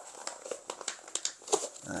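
A pause in a man's talk: faint scattered clicks and small rustles, low in level, before he starts speaking again at the very end.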